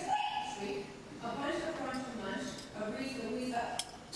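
Indistinct human voices, rising and falling in pitch.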